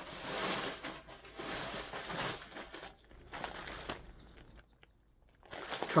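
Clear plastic bag crinkling and rustling in three or four bursts as a bagged cake of yarn is handled and pulled out.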